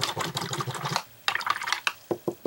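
A paintbrush being rinsed, rattling and clicking against its water container in two quick runs of rapid clicks, the second shorter.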